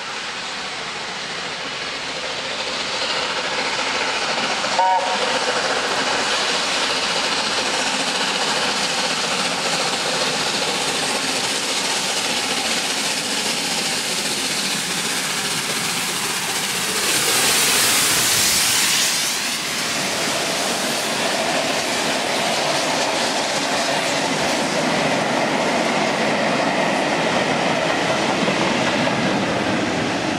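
LNER A4-class three-cylinder 4-6-2 steam locomotive No.4464 "Bittern" approaching and running through at speed with its train. The noise builds, a short chime-whistle note sounds about five seconds in, the locomotive itself is loudest at about two-thirds of the way through, and then the coaches roll past.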